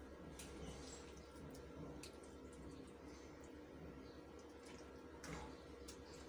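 Faint clicks and soft wet scrapes of a serving spoon against the metal karahi and bowl as thick curry is dished out, over a low steady hum.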